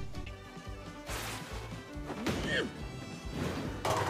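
Quiet background music from the dubbed anime's soundtrack, with a bowling ball crashing into the pins near the end.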